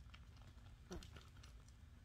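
Faint crinkling of a horse fly mask being handled, with a few soft clicks about a second in.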